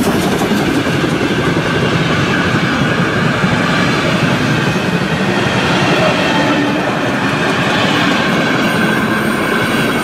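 A steam-hauled passenger train's tender and coaches rolling past close by, their wheels running loudly and steadily over the rails.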